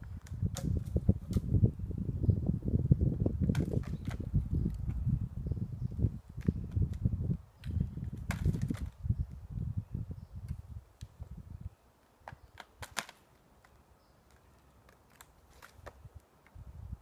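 Wind buffeting the microphone, a gusty low rumble that stops suddenly about two-thirds of the way through. Scattered sharp clicks and snaps sound throughout, with a quick few together near the end.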